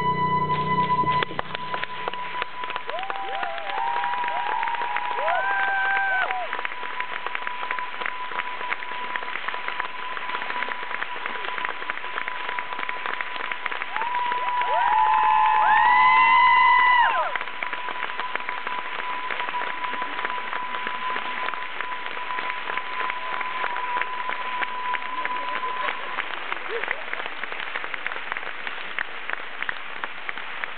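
Concert audience applauding and cheering after the song's last note dies away about a second in; the cheering swells around halfway through, and a steady high tone runs beneath the applause until near the end.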